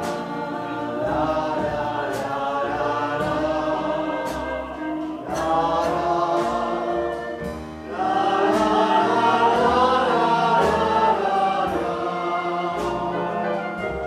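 A group of men and women singing together in chorus, with a live band accompanying them. The singing grows louder about eight seconds in.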